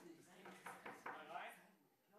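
Faint, indistinct speech that dies away about one and a half seconds in.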